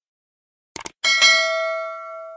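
Subscribe-button sound effect: a quick double click about three quarters of a second in, then a bell ding that rings out and fades over about a second and a half.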